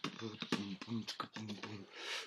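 Beatboxing: a low hummed bass note pulsed about four times a second, with sharp mouth clicks between the beats.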